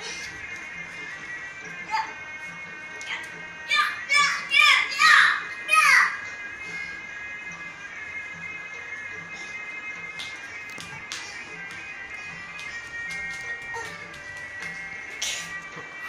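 Music with an even beat and held tones, playing from a television in the room. Between about four and six seconds in, a run of loud, high vocal cries rises above it.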